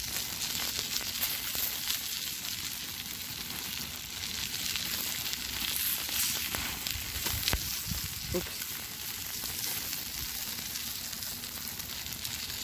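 Chicken pieces sizzling on aluminium foil over a charcoal fire on a park grill: a steady hiss with small crackles.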